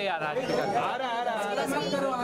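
Several people talking over one another: overlapping chatter among a group of guests.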